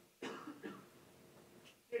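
A person coughing: two short coughs in quick succession, the first louder, about a quarter second in.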